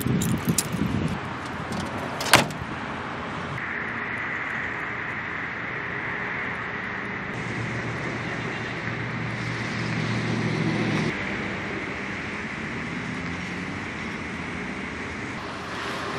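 A car door shuts with one sharp thud about two seconds in. After it comes steady vehicle noise with a thin high whine, and a low hum that swells and fades in the middle.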